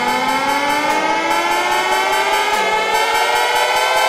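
Electronic dance-remix build-up: a synth riser whose stacked tones glide slowly and steadily upward in pitch, with the kick drum dropped out.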